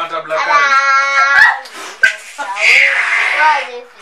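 Women laughing and shrieking: a long, high-pitched held shriek starting about half a second in, then a breathy burst of laughter.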